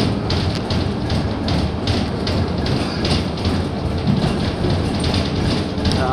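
Cabin noise inside a 2018 Gillig transit bus under way: a steady low engine hum under road noise, with frequent irregular rattles.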